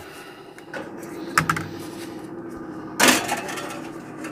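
A countertop toaster oven's door is opened and a foil-lined aluminium pan is set onto its wire rack: a small clack about a second and a half in, then a louder metallic clatter about three seconds in, over a steady low hum.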